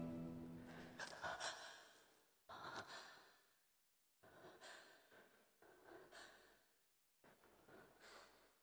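The last held chord of the opera accompaniment dies away, then near silence broken by a string of faint, soft breaths or sighs about every second and a half, picked up by a performer's headset microphone.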